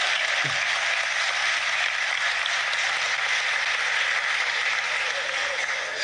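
An audience applauding: steady, dense clapping.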